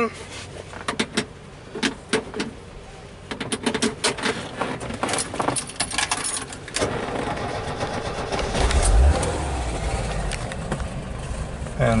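Clicks and rattles of a seatbelt buckle and keys, then about seven seconds in a VW campervan's air-cooled flat-four engine starts, with a low rumble swelling about two seconds later before settling into a steady idle.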